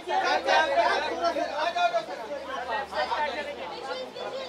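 Several voices talking and calling out over one another: chatter with no single clear speaker.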